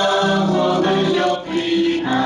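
A choir singing a Christian hymn in sustained, held notes.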